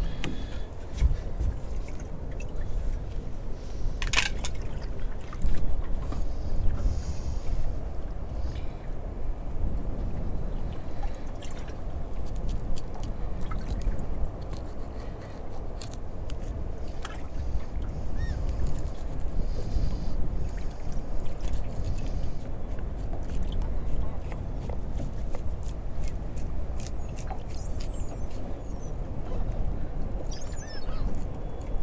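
Steady low rumble of wind and water around a small boat drifting at sea, with water lapping at the hull and a few light clicks and knocks.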